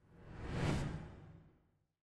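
A whoosh sound effect with a deep low end, swelling to a peak just under a second in and then fading away.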